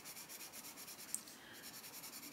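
Castle Arts Gold coloured pencil shading on paper, held on its side for a light layer: faint, quick, even back-and-forth strokes. A small tick comes about a second in.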